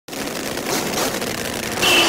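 A rushing noise, building slightly, from the sound design of an animated logo intro, with a short high tone near the end leading into rock music.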